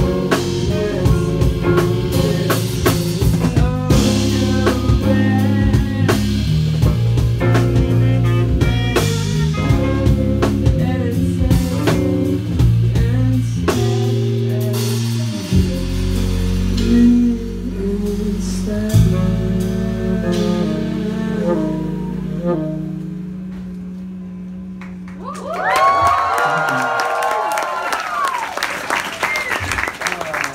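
Live band of electric guitar, bass, drum kit and vocals playing the end of a song. The drums stop about halfway through and held chords fade out. Near the end, an audience cheers and whoops.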